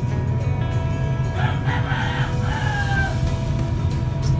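A rooster crowing once about a second and a half in, one call that ends in a falling tail, over steady background music.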